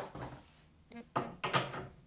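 Handling noise as a reloading die is brought to the top of an RCBS single-stage reloading press: a short sharp click about a second in, then two brief knocks.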